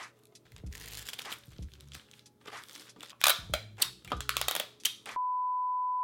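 Paper rustling and crinkling in a run of sharp, irregular bursts, loudest in the second half, as a handwritten sheet is handled. About five seconds in it cuts to a steady, single-pitch test-card beep.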